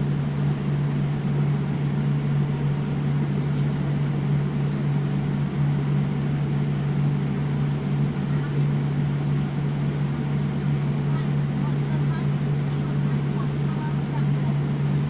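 Jet airliner engines at takeoff thrust during the takeoff roll, heard from inside the cabin: a loud, steady roar with a strong low hum underneath.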